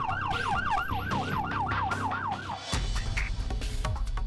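Emergency vehicle siren in a fast yelp, its pitch rising and falling about five times a second, stopping abruptly about two-thirds of the way through; a low rumble takes over after it.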